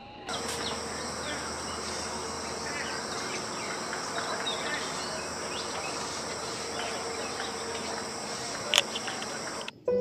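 Steady high-pitched insect chorus, crickets trilling, over outdoor ambience with scattered short chirps. A sharp click comes near the end, and then the sound cuts off abruptly.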